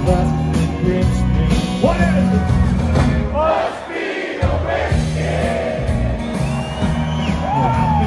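Live country band playing loudly, with singing over bass, drums and guitars, heard from the audience. The bass and drums drop out briefly about halfway through, then come back in.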